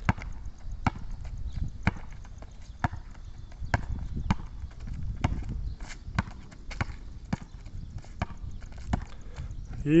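A basketball being dribbled on an outdoor court: single bounces come about once a second at an uneven pace as the player weaves between cones.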